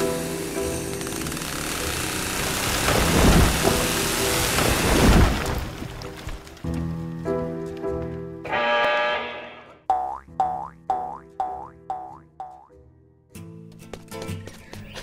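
A cartoon soundtrack: music plays under a loud rushing, crashing sound effect in the first half. Then comes a run of six short falling "boing" effects, about two a second.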